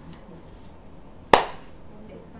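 A single sharp knock about a second and a half in, over low steady room noise.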